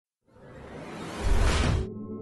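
A whoosh sound effect for an animated logo reveal. After a moment of silence, a rushing swell builds for about a second and a half, then cuts off suddenly into soft, sustained ambient music tones.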